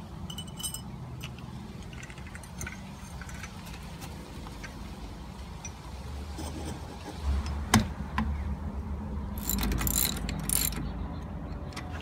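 Small metal clinks and clicks from the parts of a brass water pressure regulator being reassembled by hand, as the spring and lower housing are fitted back onto the valve body. There is one sharp click about eight seconds in and a short run of bright jingling clinks a little later, over a steady low rumble.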